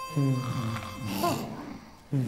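Two low, wordless vocal sounds from a cartoon character: the first falls in pitch over about a second, and the second, shorter one rises and falls.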